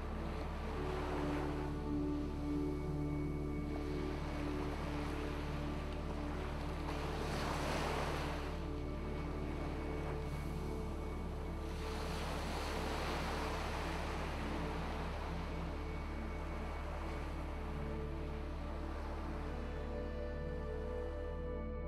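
Soft ambient background music with held tones, layered with ocean-wave sounds that swell and recede about every five or six seconds.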